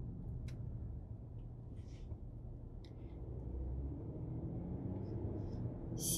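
Car cabin noise while driving: a steady low rumble of road and engine, with a couple of faint clicks.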